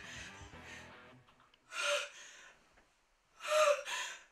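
A woman's gasping sobs, two sharp breaths with a short voiced catch, over faint background music.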